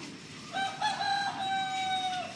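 A long, pitched animal call in the background, starting about half a second in, stepping up once, then held on one note and dropping away at the end.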